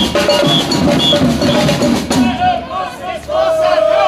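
A street drum band of snare drums and a bass drum playing a fast beat. About halfway through the drumming breaks off while voices call out, and a long held note sounds near the end.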